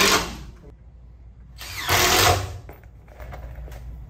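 Cordless impact driver driving small hex-head timber screws through a steel joist hanger into a wooden beam, in two short bursts: one ending about half a second in, the next running for about a second from a second and a half in.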